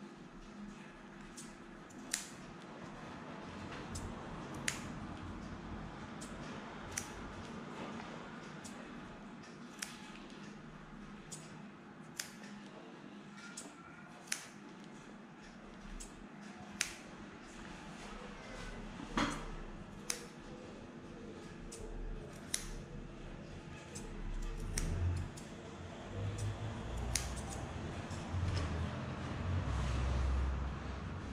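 Curved grooming scissors snipping the fringe along the edge of a cocker spaniel's ear: sharp single snips every one to three seconds. Low rumbling comes in over the last few seconds.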